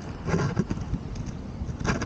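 Wind buffeting the microphone in a steady low rumble, with two brief rustling bumps of the camera being handled, one shortly after the start and one near the end.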